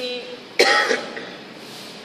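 A single sharp cough about half a second in, after the tail of a spoken word.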